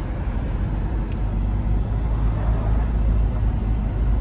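2022 Corvette Stingray's 6.2-litre V8 running at low cruising speed, heard from the open cockpit with the top down: a steady low rumble mixed with road noise.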